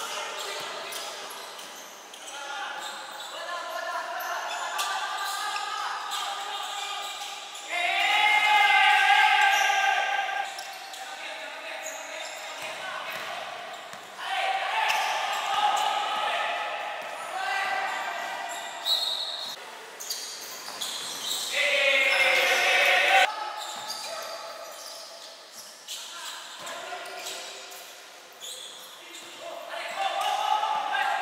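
Basketball being dribbled and bouncing on a wooden court during play, with players' voices calling out, echoing in a large gym hall.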